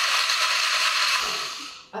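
Countertop blender with a glass jar running at full speed, blending ice cubes with milk and coffee powder into an iced coffee: a loud, steady whirring that winds down and stops near the end.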